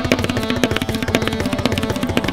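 Tabla playing a fast solo passage in ektal: a rapid, dense run of crisp strokes on the treble drum, with the deep, booming bass-drum strokes absent in this stretch.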